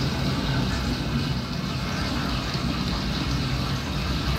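Recorded thunderstorm ambience from the Thunderspace sleep app, played through a bass-boosted speaker: steady rain with a deep, continuous low rumble of thunder.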